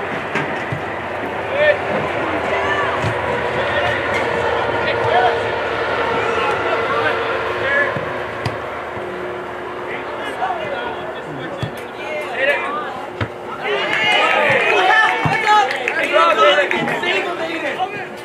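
Players and spectators calling and shouting across an outdoor soccer field, many voices overlapping with no clear words, the shouting swelling near the end. A single thud of the ball being kicked comes about two seconds in.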